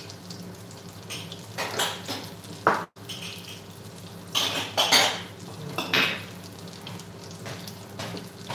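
Breaded pork schnitzels frying in oil in a skillet, a steady sizzle, with several sharp clinks and clatters of kitchenware over it.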